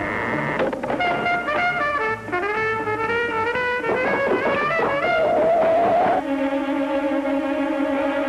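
Jazz music led by a trumpet playing a lively melody. About six seconds in it changes to steady, held chords.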